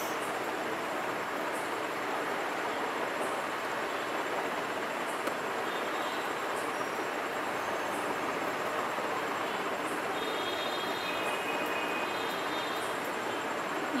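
Steady, even background hiss at a constant level, with faint scattered high ticks.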